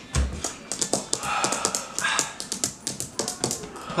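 A rapid, irregular run of sharp clicks and taps, with breathy hisses between them.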